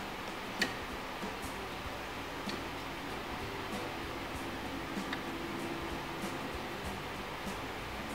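Steady quiet hiss with one sharp click about half a second in and a few fainter ticks after it.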